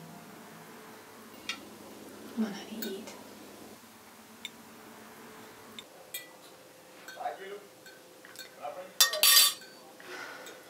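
Scattered light clinks and knocks of a drinking glass and tableware on a table, with a louder clatter lasting about half a second near the end.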